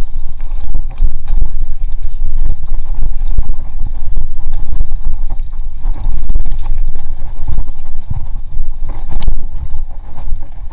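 Mountain bike descending a bumpy dirt singletrack at speed. Loud wind rumble buffets the microphone, and the 1994 GT Zaskar LE hardtail rattles and knocks over roots and bumps, its tyres running on dirt. There is a sharper knock near the end.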